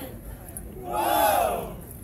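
A group of voices shouting one long call together, rising and then falling in pitch, lasting about a second from about half a second in. It comes from the marching band's players as part of their routine, not from their instruments.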